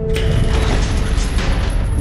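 A rapid mechanical clattering sound effect, like gears or a ratchet, starting suddenly as the music cuts off.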